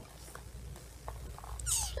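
A cat meowing once, briefly, near the end.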